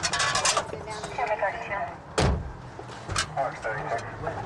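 A man climbing into the back seat of a patrol car: clicks and rustling early on, then one heavy thump about two seconds in, with voices faint behind.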